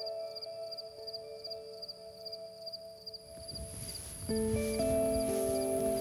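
Soft background music of long held notes, with a fast pulsing high chirp of insects above it. About three seconds in, a hiss of field ambience and a steady high insect whine come in, and new, louder held chords enter a second later.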